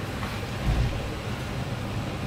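Steady low rumble with an even faint hiss from the stovetop, where a lidded steel stockpot is boiling beside butter melting in a frying pan.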